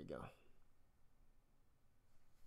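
A man's voice finishing a short phrase right at the start, then near silence: room tone.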